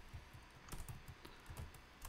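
Faint typing on a computer keyboard: a handful of separate key clicks as a word is typed.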